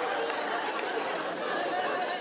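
Theatre audience laughing: a steady mass of many voices together.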